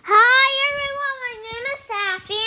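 A young child's high voice in a drawn-out sing-song, holding one long syllable for most of the time, then starting another just before the end.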